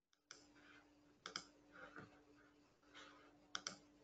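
A few faint, sharp clicks over a low steady hum on an open conference-call microphone: a single click, then a pair about a second in, another click around two seconds, and a second pair near the end.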